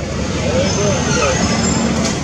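Street traffic: a steady low rumble of passing vehicles, with a faint voice heard briefly in the middle.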